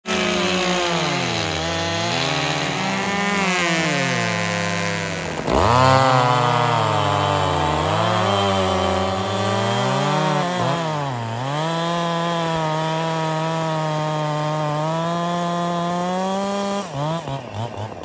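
Two two-stroke chainsaws running at the same time, their engine notes rising and falling as they rev and pull down, one note crossing the other. The sound changes abruptly about five and a half seconds in. Near the end the pitch drops and wavers as the throttles come off.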